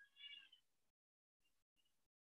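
Near silence, broken once just after the start by a brief, faint, high-pitched sound lasting about a third of a second.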